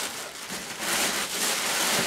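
Rustling and crinkling of a white wrapping as a rubber rain boot is pulled out of it and handled, a little louder in the second half.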